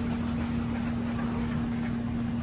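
Steady machine hum, one constant low tone over an even rushing noise.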